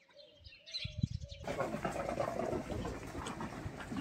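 Birds chirping and a dove cooing in a quiet outdoor setting, cut off abruptly about a second and a half in by a steady, louder outdoor noise with a low rumble, like a busy street.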